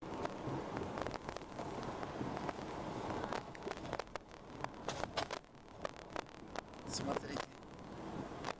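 Car cabin noise in city traffic, a steady rumbling hum, with a run of sharp clicks and knocks through the second half.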